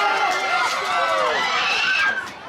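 Several voices of football spectators and players calling out over one another, loud and overlapping, with one voice rising in pitch near the end.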